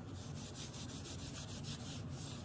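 Cotton pad soaked in acetone rubbed rapidly back and forth over the back of a nail-art stamping plate, scrubbing off nail polish: a quick run of dry scratchy strokes, several a second.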